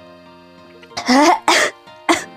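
A woman coughing twice in quick succession about a second in, choking on very spicy ramen soup she has just sipped. Soft background music plays throughout.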